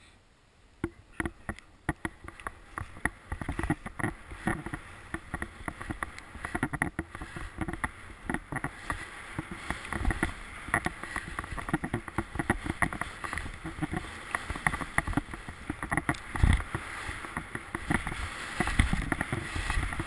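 Skis running downhill over chopped-up snow: a continuous scraping hiss full of quick clicks and chatter that starts about a second in and builds, with a few heavy low thumps as the skis hit bumps.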